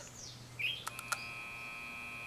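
A short rising chirp and a few clicks, then a steady high-pitched beep held for more than a second.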